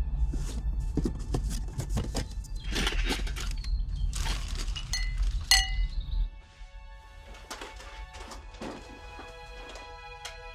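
Film score over rustling crumpled packing paper and objects being handled in a cardboard box, with a couple of bright glassy clinks about five seconds in. A low rumble underneath cuts off about six seconds in, leaving the music and faint rustles.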